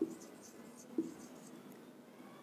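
Marker writing on a whiteboard: faint scratchy pen strokes, with a light tap about a second in.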